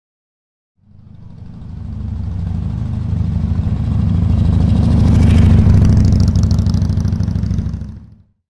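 A motorcycle engine running, swelling in about a second in, loudest around the middle and fading out near the end.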